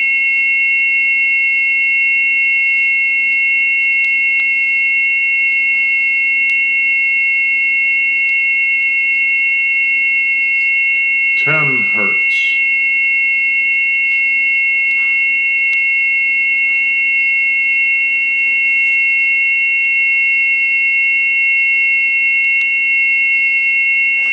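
A test record's tonearm-resonance band played back by a Grado Reference Platinum cartridge on a Rega RB300 arm: a steady high test tone that holds level in pitch and loudness, without the warble that would mark the arm and cartridge resonance. About halfway through, the record's voice announces the next test frequency.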